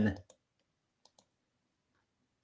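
Two faint, short clicks a little after a second in, following the end of a spoken word; otherwise near silence.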